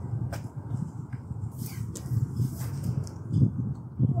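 Wind buffeting the microphone: an uneven low rumble that gusts and is loudest a little before the end, with a few faint clicks.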